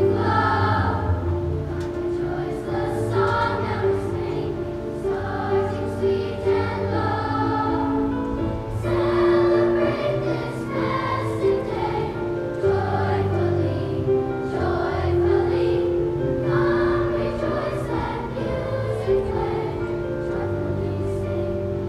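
A children's choir of fifth-graders singing a song together, in sustained phrases with held notes.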